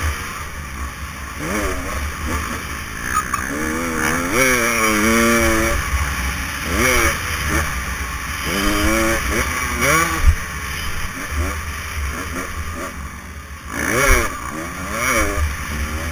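Motocross dirt bike engine, heard from the bike itself, revving up and falling off over and over as the throttle is worked and gears change, with one longer high rev about four to six seconds in.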